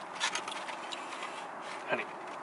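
A few short rustles of paper food packaging, with a brief voice sound just before the end.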